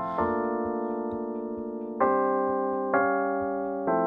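Soloed keyboard track, electric-piano-like in tone, playing held chords. A new chord strikes about two seconds in, again a second later and again near the end, and each fades slowly. It plays through an SSL-style EQ with its low end being cut around 60 Hz.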